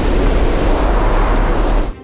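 Loud, steady rushing roar of missiles in flight, a sound effect with a heavy low rumble, cutting off suddenly just before the end.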